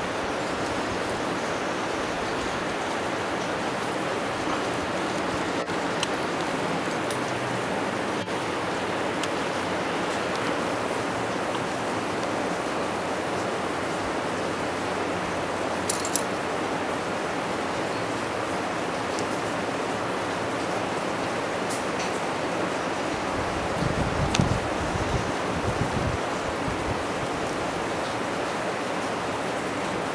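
A steady rushing noise with no speech, broken by a few faint sharp clicks. A brief stretch of low rumbling bumps comes a little past two-thirds of the way through.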